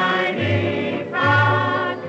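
Old Columbia 78 rpm record of a waltz: a vocal chorus holds long harmonized notes over a dance orchestra, with a low bass note sounding twice.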